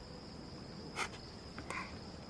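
Crickets trilling steadily in a night ambience, with two brief soft rustles, about one second in and near the end.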